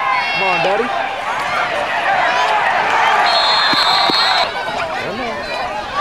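Football crowd in the stands cheering and yelling as a play unfolds, a wash of many voices that swells in the middle. A shrill whistle sounds for about a second partway through.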